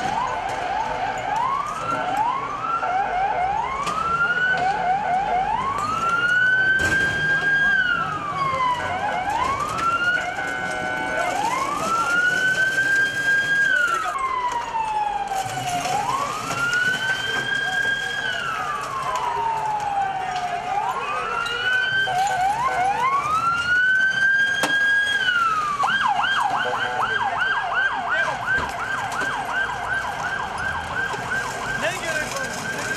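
Police vehicle siren wailing: its pitch climbs, holds high, then slides down, repeating every few seconds. A second siren overlaps it in the first few seconds. About four seconds before the end it switches to a rapid yelp.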